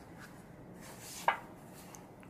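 Cards handled on a wooden tabletop: a faint sliding rustle, then a single sharp tap on the wood a little past halfway.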